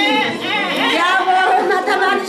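A woman's voice amplified through a handheld microphone, with other women's voices chattering over it.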